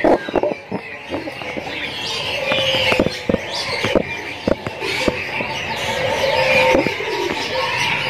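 Many caged songbirds chirping and twittering at once, with a few brief held notes and scattered sharp taps.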